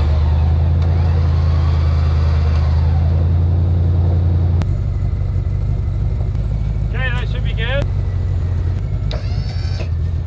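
Tow truck engine running steadily while its boom is worked, with a strong deep hum. The hum drops back about four and a half seconds in as the load eases.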